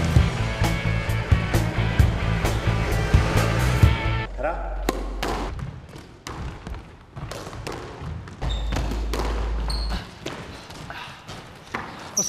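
Rock music for about the first four seconds, which then stops. It is followed by a squash rally: sharp smacks of rackets hitting the ball and the ball striking the court walls, roughly every half second, with a few short high squeaks.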